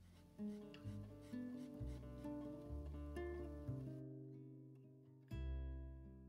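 Background music: an acoustic guitar playing slow plucked notes that ring and fade, with a louder strummed chord about five seconds in.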